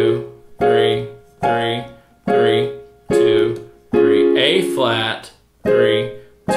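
Yamaha digital piano: right-hand major triads played in succession through their inversions as block chords, struck evenly about once every 0.85 s, each decaying before the next.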